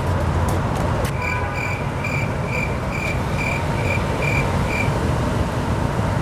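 Steady city street traffic, with a run of about ten high electronic beeps of one pitch, roughly two a second, starting about a second in and stopping about a second before the end.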